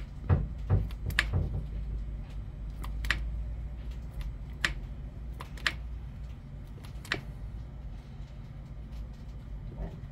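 Scattered light metallic clicks and knocks from hand work on a Caterpillar 3208 diesel's valve train: the rocker arm is pressed and the adjusting screw turned while the valve lash is set against a dial indicator. A steady low hum runs underneath.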